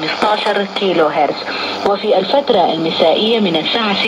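Sudanese Arabic speech from a shortwave AM broadcast, heard through the speaker of a Sony ICF-2001D receiver with a steady background hiss of static.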